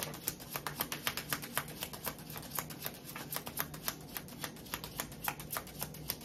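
A tarot deck being shuffled by hand: a fast, uneven run of soft card clicks.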